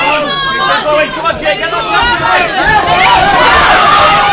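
Boxing crowd shouting and talking over one another, many voices at once, growing louder near the end.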